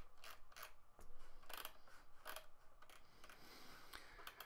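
Faint, irregular clicks and light handling noise at a computer desk over a low steady hum.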